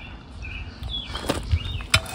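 Small birds chirping in short high calls, with two light knocks, one after about a second and a louder one near the end.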